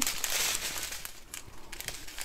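Plastic bags of diamond painting drills crinkling as they are handled and held up, with small clicks; loudest at the start and dying away.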